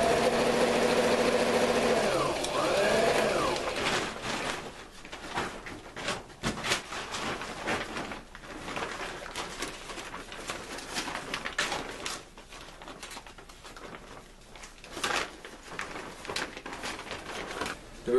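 Electric sewing machine run from its foot pedal, stitching heavy tarp: the motor runs fast and steadily for about four seconds, its pitch dipping and rising once or twice, then stops. After that come scattered clicks and rustles as the work is handled.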